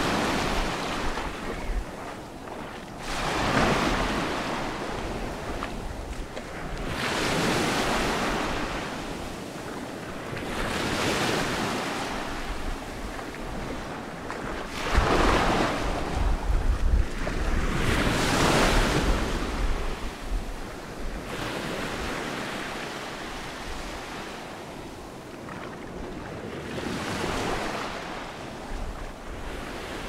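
Small Mediterranean waves breaking and washing up over a sand-and-pebble shore, the surf swelling and fading every three to four seconds. Wind rumbles on the microphone, most strongly around the middle.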